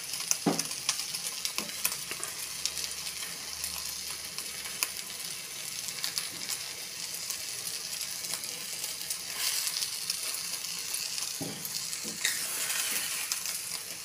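Beaten eggs with chopped spring onion and chili sizzling in a little oil in a wok, with a steady hiss. Now and then a spatula scrapes and taps against the pan as it turns the omelette.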